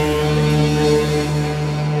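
Live psychedelic rock band holding a loud, steady drone of sustained low notes, electronic-sounding, with no drumbeat.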